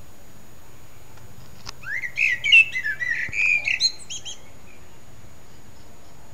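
A songbird singing one phrase of about two seconds, starting about two seconds in: a rising whistle followed by a quick jumble of higher chirps and twitters.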